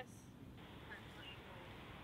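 Quiet outdoor ambience with a steady low rumble and faint, indistinct voices.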